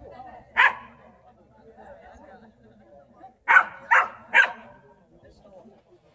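A dog barking: a single bark about half a second in, then three quick barks in a row about three and a half seconds in.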